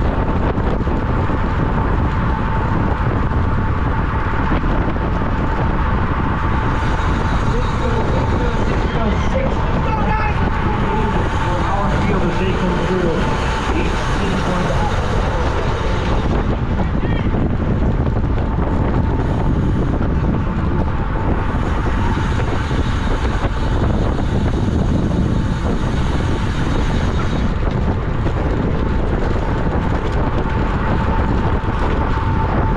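Steady wind rushing over the microphone of a camera riding on a racing bicycle at about 20 to 30 mph, with a thin steady tone running under it. Faint voices come through in the middle.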